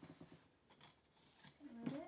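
Faint handling noises: an empty plastic cup set down on the table and cups being moved, giving a few soft knocks and rustles. A short voice sound comes near the end.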